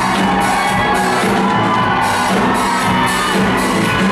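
Live rock band playing a song, loud and steady, with a regular drum beat.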